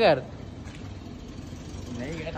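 A man's word ends at the start, followed by a low, steady background rumble of road traffic.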